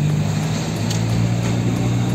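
Car engine running at a steady low hum, heard from inside the cabin while the car drives slowly.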